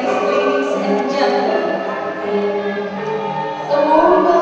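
A choir singing, with long held notes.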